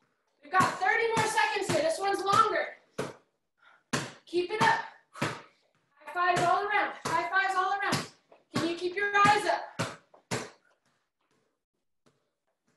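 A voice talking in short phrases with brief pauses between them.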